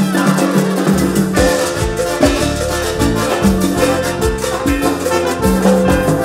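Cumbia band playing live: trombones and keyboard over a steady drum beat.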